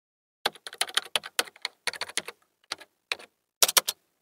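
Computer keyboard typing: a run of quick key clicks in uneven clusters with short pauses, starting about half a second in.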